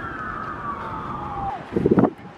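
A siren wailing, its pitch falling steadily for about a second and a half. Near the end there is a brief loud low rush of wind noise on the microphone.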